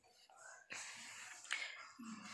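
A pause in a woman's narration: near silence at first, then a faint breathy hiss from the narrator with a small mouth click about a second and a half in.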